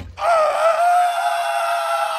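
A person's long, high-pitched scream, held on one steady note after a brief waver at the start.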